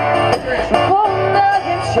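Strummed acoustic guitar accompanying a woman's sung melody in a live acoustic pop song.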